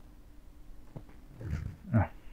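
Faint room tone with a low steady hum; near the end, two short, low, wordless vocal noises from the lecturer.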